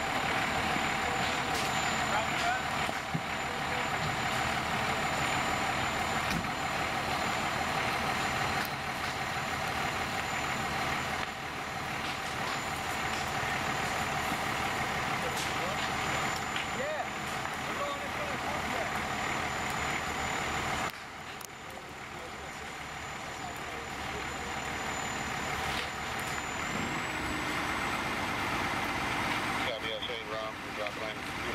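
Fire engine running steadily at the scene, a dense engine noise with a constant high whine over it, as its pump supplies a hose line.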